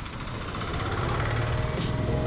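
Motorcycle engine running steadily at low road speed, a low hum under wind and road noise.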